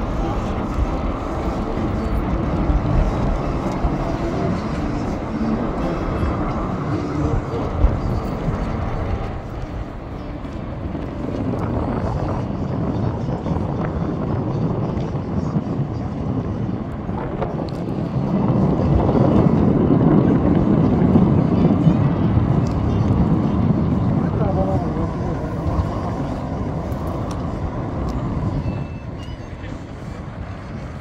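Outdoor city ambience: a steady rumble of road traffic with people talking nearby. It swells louder about two-thirds of the way through and drops away near the end.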